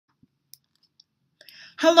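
A few faint, isolated clicks in near silence, then a soft hiss, and a woman starts speaking near the end.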